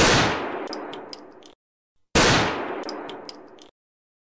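Two identical sharp bang sound effects about two seconds apart, each hitting suddenly and dying away over about a second and a half, with a thin high ringing and a few faint clicks in the tail.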